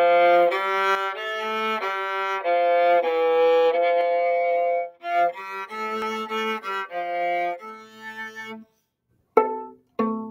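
Viola bowed through a melody of short and held notes, with a brief break about five seconds in and stopping just before nine seconds. Two short notes that die away follow near the end.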